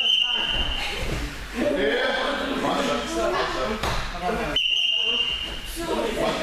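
A high, steady signal tone sounds for about a second at the start and again about five seconds later, over voices and the thuds and shuffling of wrestlers grappling on gym mats.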